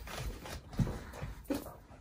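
Footsteps in high-heeled shoes on a rug: a few soft, muffled thuds spaced through the moment.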